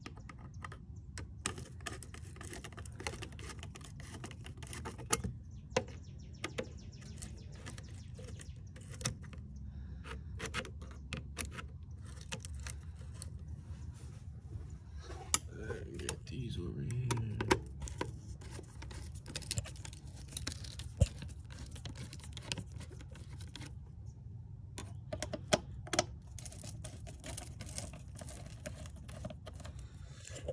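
Screwdriver working worm-drive hose clamps on an intake pipe's rubber coupler, giving a scattered run of small metal clicks and scrapes over a steady low hum.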